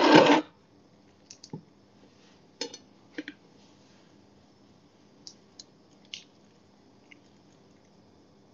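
Light, scattered clicks and taps as hands squeeze avocado flesh out of its skin onto toast on a plate, after a short loud burst of noise at the very start.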